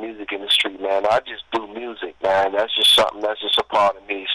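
A person talking over a telephone line, the voice thin and narrow-band.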